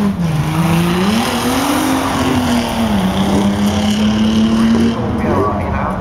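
Banger racing car engine on the track, its note rising and falling as the driver revs and eases off, over a steady background rush.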